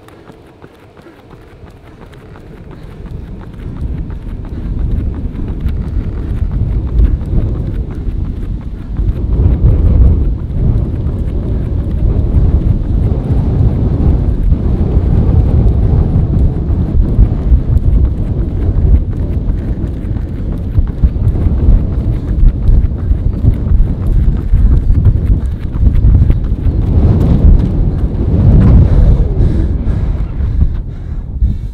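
Rhythmic running footfalls on a rubber track and hard breathing from a runner sprinting all out at the end of a 5K. Loud, low wind buffeting on the microphone builds over the first few seconds.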